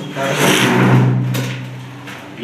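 A PVC-laminate sliding wardrobe door rolling along its track: a steady low rumble that fades away over the second half.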